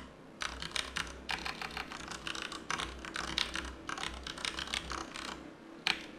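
Typing on a computer keyboard: quick runs of keystrokes broken by short pauses, with one louder key click near the end.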